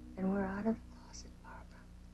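A woman speaking a brief line quietly, the last words soft and close to a whisper.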